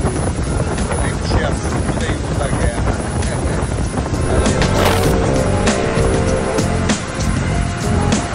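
Boat engine and wind noise running steadily on deck, with background music coming in about halfway through.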